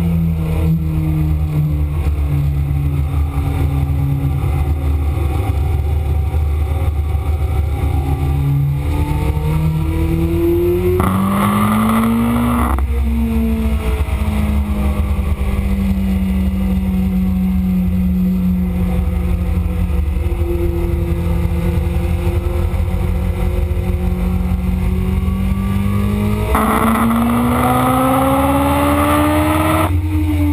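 Kawasaki ZX-7R's 750cc inline-four engine heard onboard at track speed over steady wind rush: revs falling at the start, then climbing under hard acceleration about ten seconds in with a brief dip for an upshift, and climbing hard again near the end.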